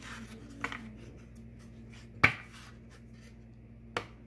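A stack of postcards handled and shuffled by hand: card stock rubbing, with a few sharp clicks of cards snapping or tapping together. The loudest click comes about halfway through.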